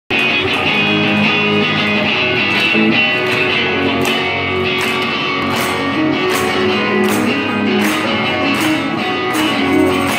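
Live rock band playing an instrumental passage with electric guitars and keyboards and no vocals. Drum hits come in about four seconds in, on a steady beat of under two a second.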